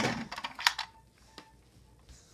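A few light clicks and taps in the first second from hard plastic toy pieces being handled.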